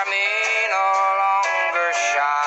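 Instrumental break in a country song: steel guitar playing long held notes, gliding from one pitch to the next.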